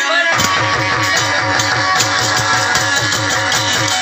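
Sindhi Bhagat folk music played live: a plucked string instrument over a fast, steady low beat, about five strokes a second, that comes in about a third of a second in.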